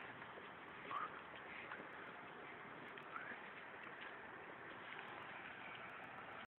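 Faint, steady city street noise, with a couple of brief faint sounds about a second in and around three seconds in.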